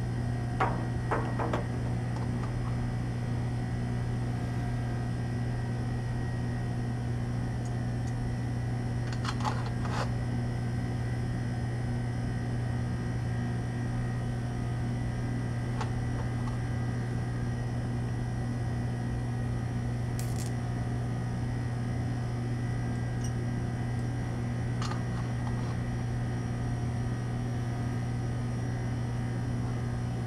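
A steady low hum of room equipment or ventilation, with a few faint light clicks of lab glassware and plastic tubes being handled, a small cluster near the start and single ones later.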